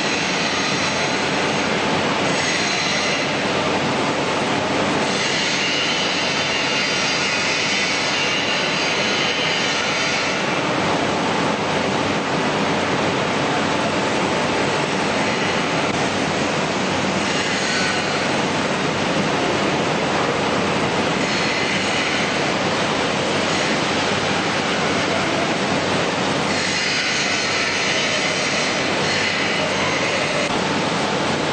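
Steady, loud machinery noise on a factory floor, with a high hiss that swells and fades several times.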